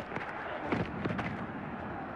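Football stadium crowd and field-microphone noise during a running play: a steady roar-like haze with a few sharp knocks, just after the start and again about three-quarters of a second in.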